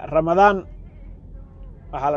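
A man's voice speaking briefly, then a pause of about a second and a half with only a faint low hum.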